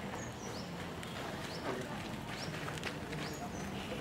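Quiet outdoor background hum with faint, short, falling bird chirps about once a second.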